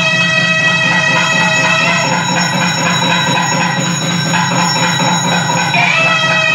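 Temple music: a steady, reedy wind-instrument tone held without a break, with a dense low rumble beneath it.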